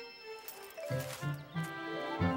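Background music from the cartoon score: a melody of held notes, joined about a second in by a low bass line.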